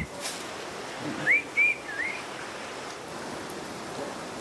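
A person whistling three short notes about a second in: the first rising, the second level, the third dipping and rising. A steady hiss runs underneath.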